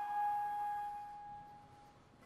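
Wooden one-keyed baroque flute holding a single long note that slowly fades away to nothing, closing a phrase.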